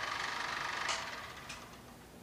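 Film editing viewer running film through its mechanism, a fast, even mechanical clatter that fades away over the second half with a couple of faint clicks.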